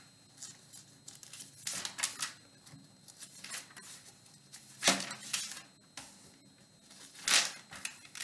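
Thin Bible pages being turned and rustled by hand, several short rustles with the loudest about five seconds in and again near the end.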